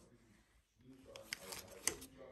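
Quiet for about a second, then a small child's soft voice with a few sharp clicks, the loudest near the end.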